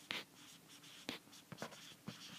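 Faint stylus strokes and taps on an iPad touchscreen as words are handwritten, three short, sharp contacts spaced over about two seconds.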